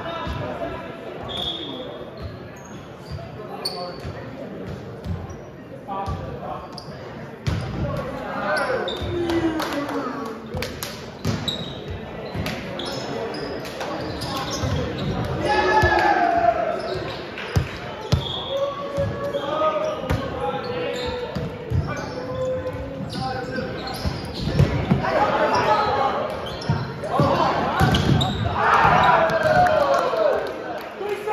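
Volleyballs being struck and bouncing on a hardwood gym floor, with players shouting and chattering in the echoing hall. The shouting grows louder near the end.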